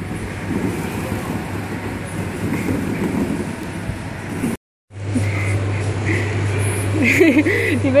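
Indoor play-hall background noise with distant voices. It is broken by a brief dead silence just past halfway, and after that a steady low hum runs on, with a child's voice near the end.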